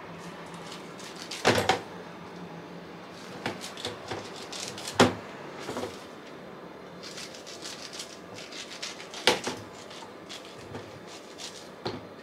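Knife cutting chunks off a peeled pineapple, with light clicks and knocks as pieces drop into a plastic food box and the blade taps against it. Three louder knocks stand out, about four seconds apart.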